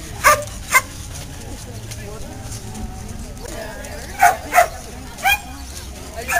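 A dog barking in short, sharp barks: two near the start, then three more about four to five seconds in.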